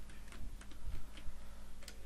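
Computer keyboard keys clicking as text is typed, a few irregular keystrokes a second, over a faint steady low hum.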